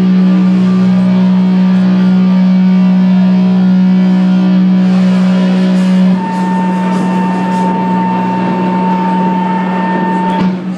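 Amplified electric guitar holding a low droning note. About six seconds in the drone drops in level and a steady high feedback whine joins it.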